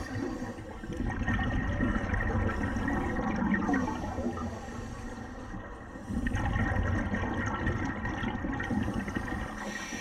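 Scuba regulator breathing underwater: two long exhalations of bubbles rushing and gurgling, the first over the first four seconds and the second from about six seconds to near the end, with a quieter pause for the inhale between them.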